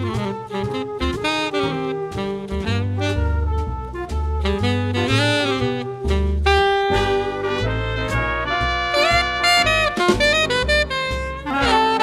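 Swing jazz septet playing live: trumpet, alto and tenor saxophones and trombone playing ensemble lines over piano, double bass and drums, with a quick rising run in the horns about nine seconds in.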